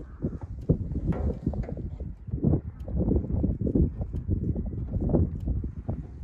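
Livestock trailer loaded with ewes and lambs rattling and knocking as it is towed over rough grass, with a continuous low rumble and irregular knocks throughout.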